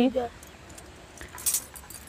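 In a pause between sung lines, the metal jingle discs of a chimta (fire-tongs instrument) clink and jangle a few times, mostly about a second and a half in.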